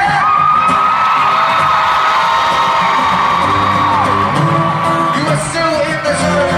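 Amplified live pop music in an arena, heard from the audience: a long, high held vocal note that slides down about four seconds in, over the band, with whoops from the crowd.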